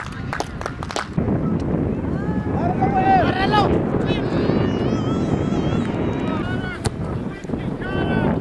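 Wind buffeting the microphone as a low, steady rumble, with distant shouts from players across the field. A quick run of clicks sounds in the first second.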